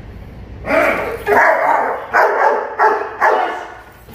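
Young German shepherd barking, about five loud barks in quick succession starting just under a second in, at a decoy's bite sleeve during protection training.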